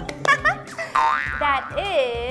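Cartoon sound effects, springy boings and swooping, pitch-bending squeaky vocal sounds, over bright children's background music.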